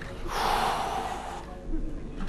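A person's loud, breathy gasp, about a second long, fading away.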